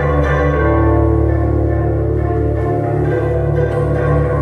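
Concert bandura played solo: plucked strings ringing on in sustained chords over deep bass notes, with a new chord struck about half a second in.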